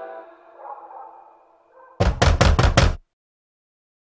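The tail of a song fading out, then a quick run of about six sharp knocks lasting about a second, followed by dead silence.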